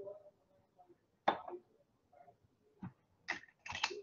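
A few scattered clicks and knocks of objects being handled on a desk, the loudest about a second in and several more close together near the end.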